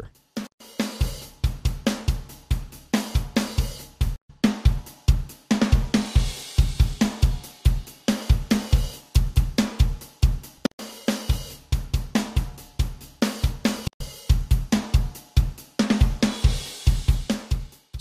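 A recorded drum kit (kick, snare, hi-hat and cymbals) plays a steady groove, heard with and without the module's processing as its Bypass is switched. The processing is multiband compression with the low band's gain raised to beef up the bass drum, plus a gate on the bass frequencies that cuts the quiet low notes and shortens the boomy release.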